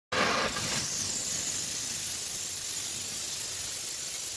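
Steam cleaner jetting steam with a steady hiss, a little louder in the first half second.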